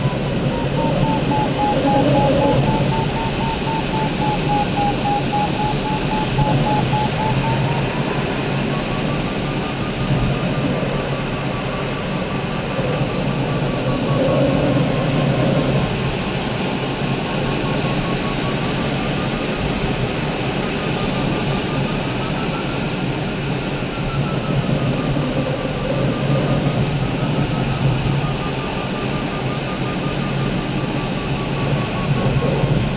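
Airflow rushing over a glider's canopy while circling in a thermal, with an electronic variometer beeping rapidly. The variometer's pitch sinks lower in the first few seconds, rises again around the eighth second, then wavers up and down as the climb rate changes.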